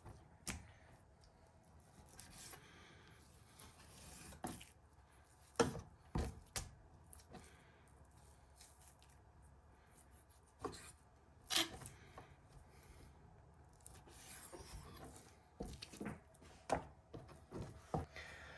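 Kitchen knife slicing raw venison into steaks on a wooden butcher's block, heard faintly. Scattered sharp taps come as the blade meets the board, with soft rubbing of the knife through the meat between them.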